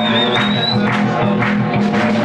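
Live blues-rock band playing loud: electric guitars, bass and drums over a steady beat.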